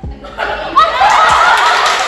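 A group of girls laughing and squealing together, starting about half a second in, with hands clapping among them.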